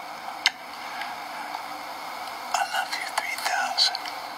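A single kiss smack about half a second in, then a man whispering softly over a faint steady hiss in the second half.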